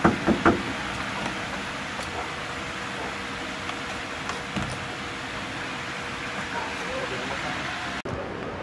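Knocking on a door: a quick run of three or four sharp knocks right at the start, followed by steady background noise.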